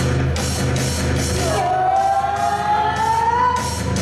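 Loud recorded yosakoi dance music in a rock style, with a steady drum beat over a low bass line. About a third of the way in, a long held note begins that slowly rises in pitch before breaking off near the end.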